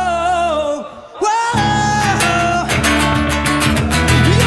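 Live band music: a male voice holds a long sung note with a wavering pitch, dips briefly about a second in, then an acoustic guitar and a five-string electric bass come back in under the singing, the guitar strumming a steady beat.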